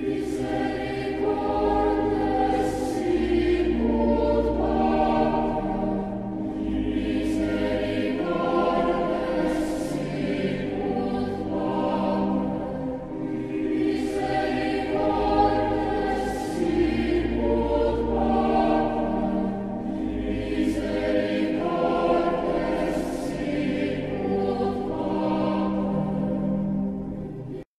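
Background music: a choir singing sacred music in long held notes over a low sustained accompaniment.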